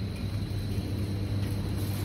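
Steady low hum with a light hiss over it: the background noise of a supermarket's ventilation and refrigeration. A faint thin high tone runs through it.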